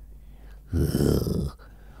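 A man's short, breathy snort through the nose, a stifled laugh, lasting under a second about halfway through.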